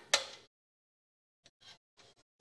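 A single sharp metal clink from hardware on the aluminum extrusion frame just after the start, then a few faint ticks as a screw is worked into a T-nut to fasten a drawer glide.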